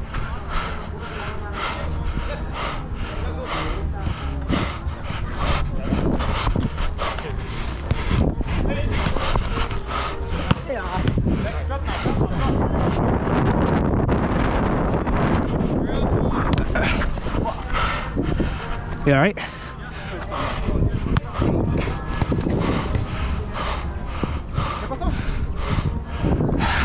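Running footfalls and the rustle and jostle of a body-worn camera on a soccer player moving about the pitch, with wind rumbling on the microphone. Players' voices call out briefly a few times.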